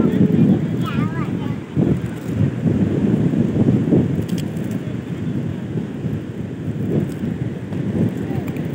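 Wind buffeting the phone's microphone: a rumbling noise that rises and falls in gusts. A brief voice is heard about a second in.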